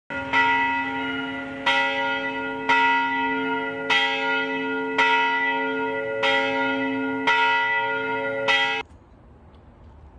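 A single church bell rung about eight times, roughly once a second, each strike ringing on into the next. The ringing cuts off abruptly near the end.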